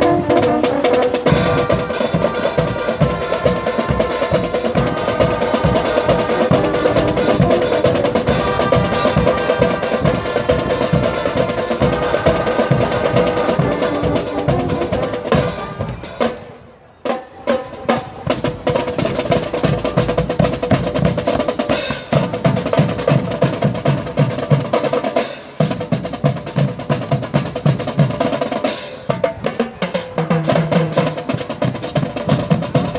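Marching band of brass and drums playing: for about the first half, brass holds sustained chords over steady bass drum and snare strokes. After a brief drop in level around the middle, the drums take over with dense, rhythmic snare, bass drum and sharp wood-block-like clicks, with the brass lighter.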